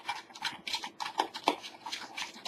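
Wooden stir stick scraping and tapping inside a small plastic tub while two-part epoxy resin and hardener are mixed: a run of short, irregular scrapes and knocks.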